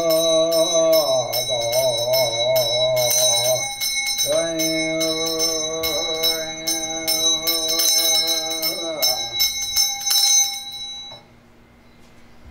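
A Buddhist monk chanting in long held tones, two phrases with a short break about four seconds in, over a small bell rung rapidly at about four strokes a second. The chant ends about nine seconds in and the bell stops about two seconds later.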